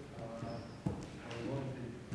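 Indistinct, low-level voices in a large hall, with one sharp knock a little under a second in.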